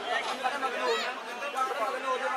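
Lively chatter of a small crowd: several people talking over one another at once.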